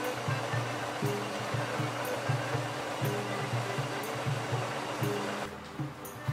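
Background music with a steady repeating beat, under an even rushing hiss that stops suddenly shortly before the end.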